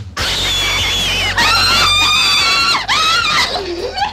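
A woman screaming with excitement: one long high-pitched scream, then a shorter one about three seconds in.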